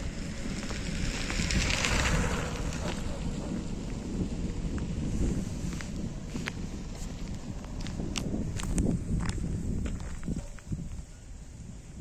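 Wind rumbling on the microphone with rustling of grass and leaves, and a run of short sharp clicks and crackles between about six and ten seconds in.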